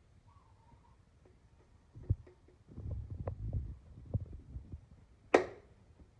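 A coconut being worked open by hand on grassy ground: a dull knock, a run of low thuds, then one sharp, loud crack about five seconds in.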